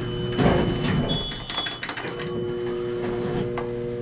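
Elevator car door sliding shut after the door-close button is held, with a rapid run of clicks and a brief high tone about a second in. A steady hum drops out while the door moves and returns afterwards.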